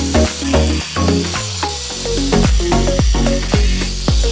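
Background music with a steady beat over the steady high hiss of an angle grinder cutting through a steel rod.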